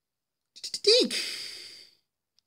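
A few quick clicks, then a short voiced sound falling sharply in pitch that trails off into a breathy hiss, a sigh-like exhale from a person.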